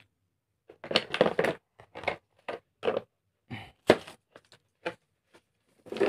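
Irregular clatter of a plastic tool case and a cordless screwdriver being handled: clusters of short clicks and knocks, with one sharper knock about four seconds in.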